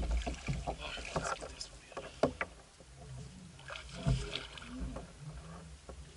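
Knocks and clicks of fishing rods and gear being handled in a kayak, a few sharp ones about a second apart, over a steady low rumble.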